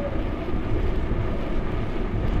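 Wind buffeting an action camera's microphone on a moving bicycle, with tyre noise on the road: a steady low rumble under a lighter hiss.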